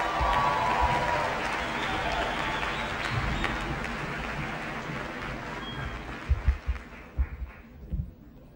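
A large audience applauding, the clapping gradually dying away over the last couple of seconds, with a few low thumps near the end.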